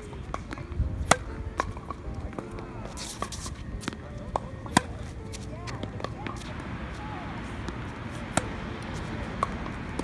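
Tennis rally on a hard court: sharp pops of the ball off racket strings and its bounces on the court, coming at irregular intervals every second or so, a few much louder than the rest.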